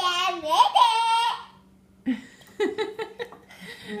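A young child's laughter: a high-pitched laughing squeal for about the first second and a half, then after a short pause a run of short, choppy giggles.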